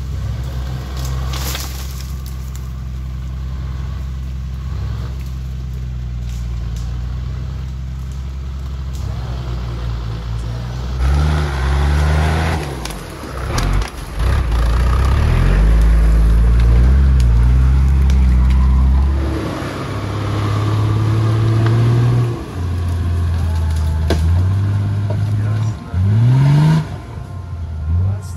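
Off-road 4x4's engine running steadily for the first ten seconds or so, then revving up and down repeatedly, loudest around the middle, with a quick rising rev near the end.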